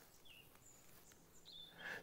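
Near silence, with a couple of faint, short, high bird chirps.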